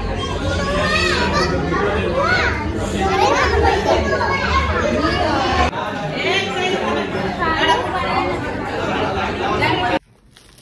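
Crowd of party guests talking over one another, with children's high voices calling and shouting through the chatter, in a large hall.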